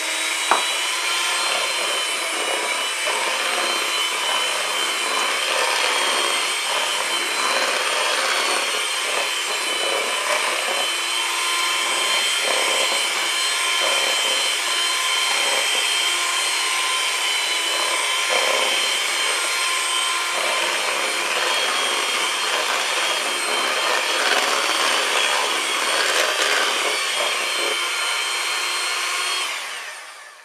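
Electric hand mixer running steadily, its beaters whirring through cake batter in a plastic bowl. It is switched off at the very end.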